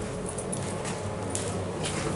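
Faint footfalls and scuffs on a tiled floor, with a few soft clicks.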